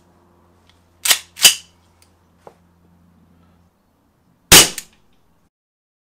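A 1911-style CO2 pistol: two sharp clicks a little over a second in as it is readied, then a single loud shot with the CO2 at room temperature, about four and a half seconds in.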